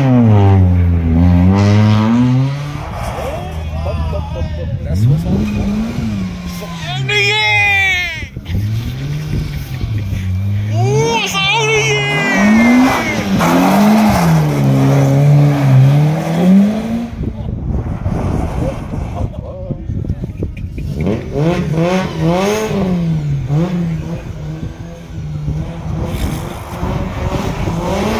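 Rally car engines revving hard and dropping back as cars pass one after another, with three main passes, each a rising and falling engine note.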